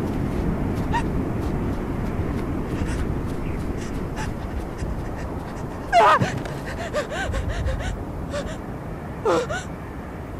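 Heavy panting breath over a steady low rumble, broken by a loud, wavering gasping cry about six seconds in and another shorter whimpering cry near the end.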